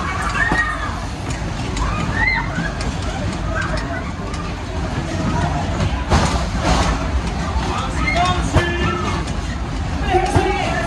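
Fast-moving fairground ride heard from on board: a heavy rumble of wind buffeting the phone's microphone, with shouting voices on and off over the top.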